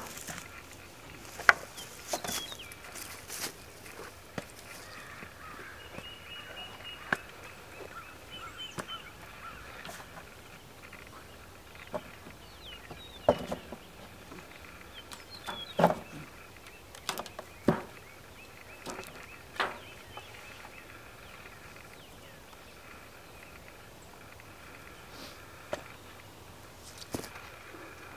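Scattered sharp knocks and clunks, a few seconds apart, as a wooden swarm-trap box is handled on a ladder and hooked onto a French cleat on a tree trunk. Faint bird calls underneath.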